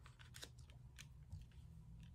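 Faint, scattered clicks and light scrapes of tarot cards being handled, a card slid across the table and the deck held in the other hand; otherwise near silence.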